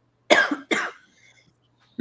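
A person coughing twice in quick succession, two short harsh coughs.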